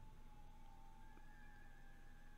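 Near silence: faint room tone with a low hum and a faint, steady high tone, joined about halfway through by a second, higher one.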